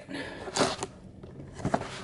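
Cardboard shipping box being handled and shifted on a desk as it is about to be opened. It gives a soft scrape and rustle at first, then a couple of light knocks near the end.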